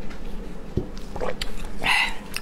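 Close-miked mouth sounds of eating and drinking: short wet smacks and swallows, with a soft low knock just under a second in and the loudest smack near the end.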